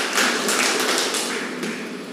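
Audience applauding in a large hall, a dense patter of many hands clapping that eases off toward the end.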